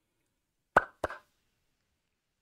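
Two quick mouth pops, about a third of a second apart, the first the louder.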